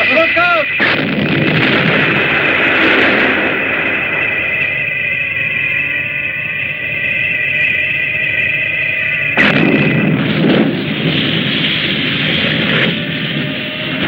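Film sound effects of a destructive blast: explosions and crashing debris, with a loud new blast about nine and a half seconds in. A steady high tone runs under the crashes until that second blast.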